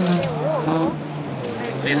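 Hatchback rally car engine running as the car climbs past, its pitch dropping early and staying lower toward the end, with an announcer's voice over it.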